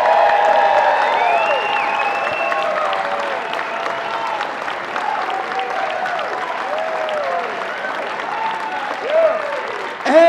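Live audience applauding and cheering, with scattered shouts rising and falling in pitch over the clapping; the applause slowly fades across the stretch.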